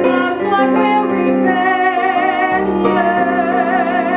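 A soprano singing held notes with vibrato, accompanied by piano.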